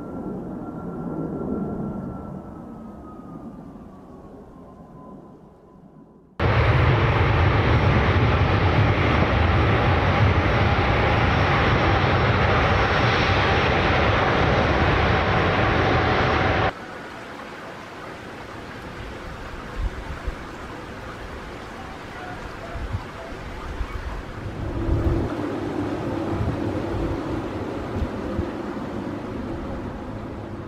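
Jet airliner engine noise in three parts. First a Boeing 737 MAX climbing away, its engine whine falling slowly in pitch. About six seconds in comes a much louder, steady jet noise from a Boeing 747 on the runway, which stops suddenly about ten seconds later, followed by quieter, more distant jet noise.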